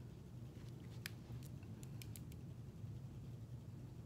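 Marker pen writing on a glass candle jar: a few faint, scattered ticks of the tip on the glass, over a low steady hum.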